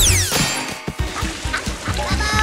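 Cartoon soundtrack: a high, squeaky cartoon voice glides steeply down in pitch at the very start, then background music with a steady beat carries on more quietly.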